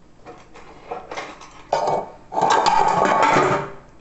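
Kitchen handling sounds: a few light clicks and knocks, then a loud noisy burst that starts sharply and lasts about a second and a half before stopping.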